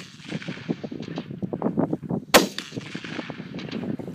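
A single loud rifle shot a little past halfway through, followed by a short fading echo, over a busy low crackle.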